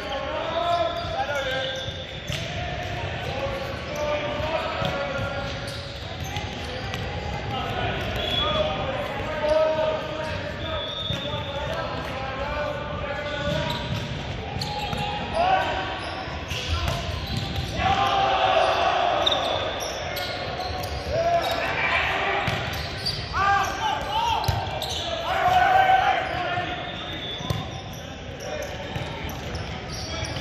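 Indoor volleyball rally in a large echoing gym: the ball struck with sharp smacks on serves, sets and hits, sneakers squeaking on the hardwood court, and players and spectators shouting and calling throughout.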